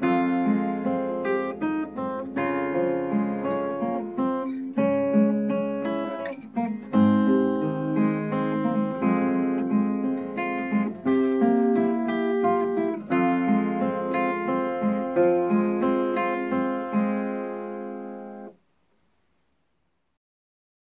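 Capoed steel-string acoustic guitar fingerpicked in a continuous run of ringing single notes, arpeggiating Em, C and B7 chord shapes. It stops suddenly about 18½ seconds in.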